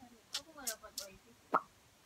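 Faint voices in the room, then a single short pop about one and a half seconds in.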